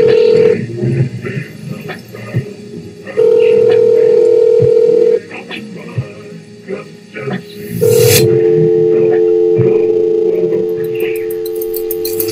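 Telephone ring tone from the music video's intro: a steady tone sounding in two-second rings, then a longer held tone with a second, lower pitch starting about eight seconds in, over faint clicks and background sounds.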